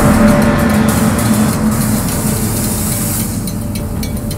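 Channel intro sting: loud music layered with a sound effect that carries a held low tone and a hiss of high noise. It is loudest at the start and eases off gradually, with a few clicks near the end.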